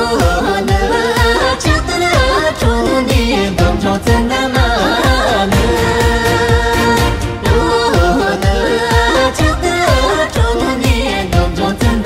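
Tibetan dance song with a singing voice over a steady dance beat of roughly two beats a second; the vocal comes in right at the start.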